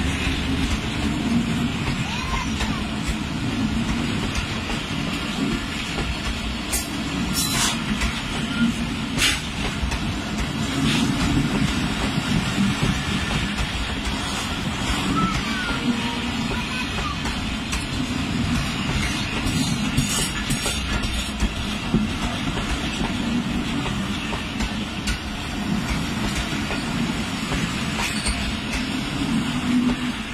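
Pakistan Railways passenger coaches rolling past close by: a steady rumble of wheels on rail, with a few sharp clanks about seven to nine seconds in.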